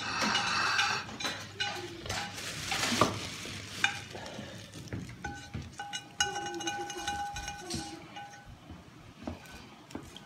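Spatula scraping a wok as its hot, sauced topping is tipped onto a plate of crispy pan-fried noodles, the sauce sizzling as it lands, loudest about two to three seconds in. A few knocks of metal on metal come from the spatula against the wok.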